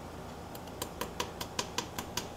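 Light, evenly spaced clicks, about five a second, starting about half a second in, as pliers squeeze a wheel onto the axle pin of a die-cast toy car.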